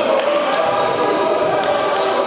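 A basketball bouncing on the wooden floor of a sports hall during play, the hits echoing in the large hall.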